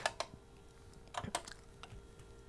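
A few sparse clicks of keys being pressed at a desk, about five in all, over a faint steady hum.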